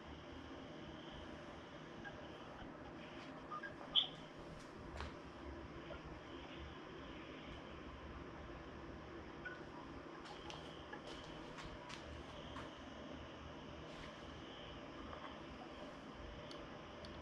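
Quiet room tone with a few faint clicks, and one short, sharper sound about four seconds in.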